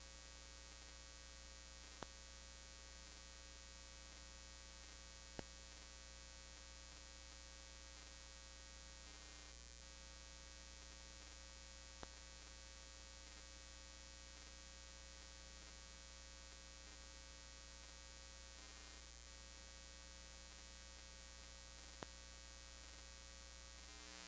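Near silence: a steady electrical mains hum in the room tone, broken by four single faint clicks.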